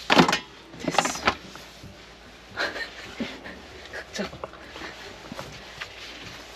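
Two sharp knocks about a second apart, then softer scattered taps and rustles of things being handled.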